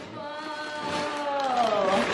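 A person's voice holding one long vocal sound for about two seconds, growing louder and falling in pitch near the end.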